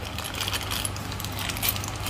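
Plastic packaging crinkling and small metal mounting brackets clinking inside their bag as they are handled, a dense run of small clicks and rustles.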